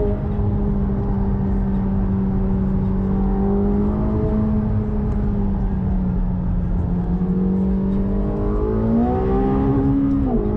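Car engine heard from inside the cabin, running at a steady pitch while cruising, then rising in pitch as it accelerates near the end.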